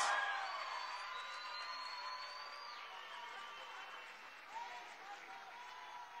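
Audience applauding; the applause fades steadily away, leaving faint voices underneath.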